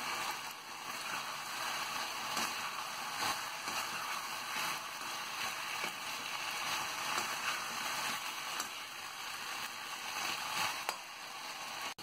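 Potato strips and chilli sauce sizzling steadily in a kadhai as they are tossed and stirred with a metal slotted spoon, with occasional light scrapes of the spoon against the pan.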